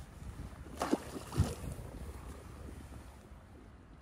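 Two short splashes about a second in as a steelhead is let go over the side of the boat, over a steady low wind-and-water rumble that fades toward the end.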